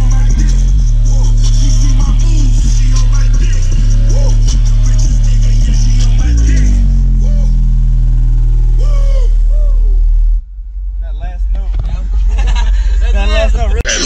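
Rap music with deep, held bass notes and a steady beat played very loud through MMATS Juggernaut subwoofers inside the car. About ten seconds in the deep bass cuts off suddenly and the music goes quieter and thinner.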